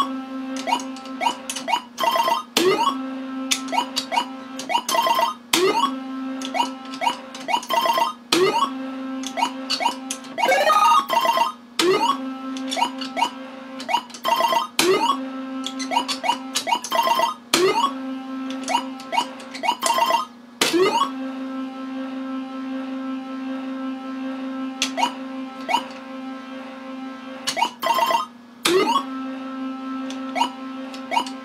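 Universal Tropicana 7st pachislot slot machine in play: a steady electronic tone while the reels spin, broken every second or so by sharp clicks and short rising electronic chirps as games are started and the reels are stopped. About ten seconds in, a longer rising sweep of tones.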